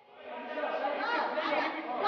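Crowd of spectators talking and calling out at once, echoing in a large hall; the voices rise in just after the start.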